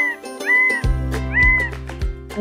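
Three short meow-like tones, each rising then falling, played as a cartoon sound effect over children's background music. A bass line in the music comes in about halfway through.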